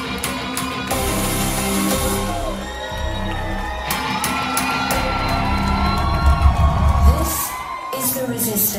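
Rock band playing the instrumental intro of a song live through a club PA, with crowd whoops and cheers over the music.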